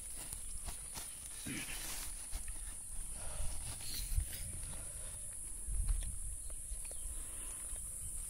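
Outdoor rural ambience with a steady high-pitched insect drone, over low rumbles and thumps from the phone being handled close to the microphone. A short voice sound comes about a second and a half in.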